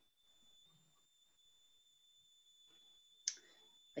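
Near silence, with a faint steady high-pitched electronic whine and a single short click about three seconds in.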